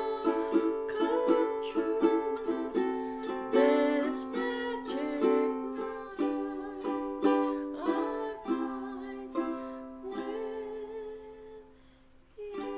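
Ukulele strummed in chords with a woman singing along. The strumming slows and the playing grows quieter toward the end, the last chord ringing out and fading away.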